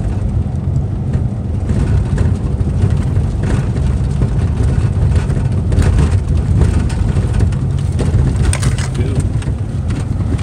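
Steady low rumble of road and engine noise inside the cabin of a moving Chevrolet.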